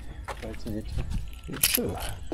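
Quiet speech between two men in short, unclear snatches.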